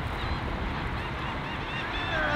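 Steady wind rumble on the microphone, with faint short high chirps repeating through it.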